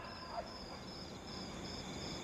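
Crickets chirping faintly in a steady, high, pulsing trill, as night ambience.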